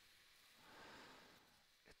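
Near silence: faint room tone and hiss, slightly louder around the middle.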